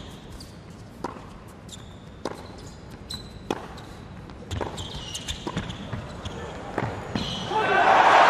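Tennis rally on an indoor hard court: racket strikes on the ball about once a second, with short squeaks from players' shoes. Crowd cheering swells near the end as the point is won.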